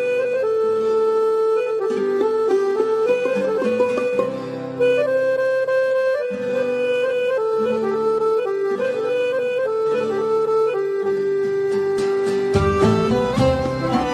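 Instrumental Turkish folk music: an accordion plays a steady, ornamented melody over a light accompaniment, with no singing. Near the end a fuller, deeper accompaniment comes in.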